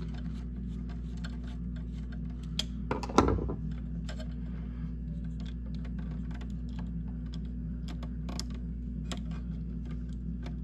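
Small clicks and taps of a screwdriver, copper wire and the plastic switch being handled as a wire is fitted to the switch's screw terminal, with one louder knock about three seconds in. A steady low hum runs underneath.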